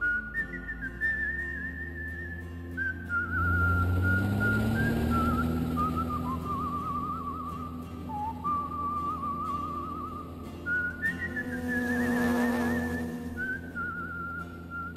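A whistled melody of long held notes with a wavering vibrato, as background music. Underneath it a low rushing drone swells up about three and a half seconds in and again about eleven seconds in.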